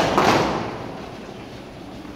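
A platoon of cadets stamping and shuffling their boots on a concrete floor in near-unison on a drill command: a sudden ragged burst of stamps that echoes and dies away within about a second.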